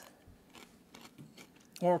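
A few faint, light clicks and scrapes of a metal spatula working under baked cookies on a parchment-lined metal baking tray. A voice says "Oh" near the end.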